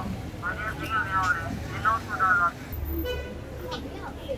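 Passers-by talking close by on a busy city street, over traffic noise; a low vehicle rumble rises about three seconds in.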